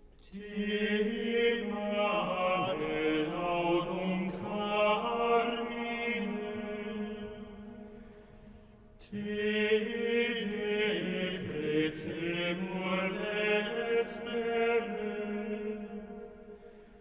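Early-music ensemble performing slow, chant-like Reformation-era music in two phrases. The first phrase fades out about eight seconds in, and the second enters about a second later.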